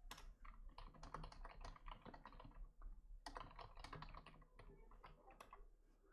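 Faint typing on a computer keyboard: quick runs of keystrokes, with a short pause about halfway through.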